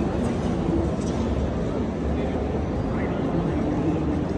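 Steady low rumbling noise with indistinct voices mixed in.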